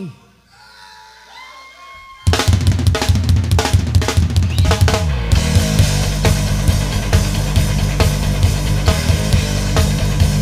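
A live rock band starts a heavy metal song. After about two quiet seconds with faint voices, the drum kit comes in loud with a fast drum-fill intro on toms, kick and snare. About five seconds in, distorted guitars and bass join and the full band plays on.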